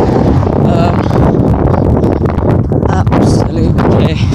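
Wind buffeting the microphone, a loud steady rumble, with road traffic passing close by.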